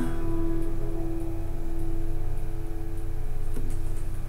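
Final chord of an acoustic guitar ringing out and fading away over about two seconds as the song ends, over a steady low hum.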